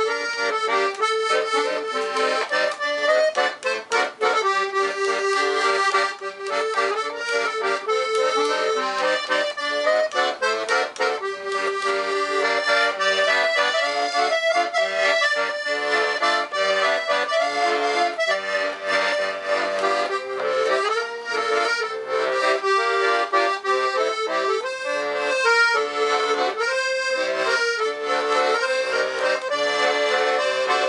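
A black Hohner Arietta IM piano accordion, a two-reed MM instrument tuned musette, playing a continuous tune: a right-hand melody over left-hand bass and chord buttons.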